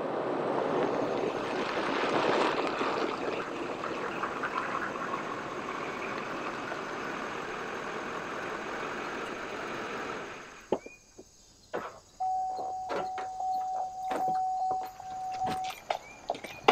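Chevrolet Silverado 3500 HD pickup towing a horse trailer, its engine and tyres rolling over a gravel lane, until it stops about ten seconds in. Then come a few sharp clicks and knocks of a door and footsteps, and a steady high tone that holds for several seconds near the end.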